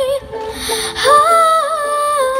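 A girl's voice singing a wordless 'ooh' melody over ukulele, settling into a held note about a second in.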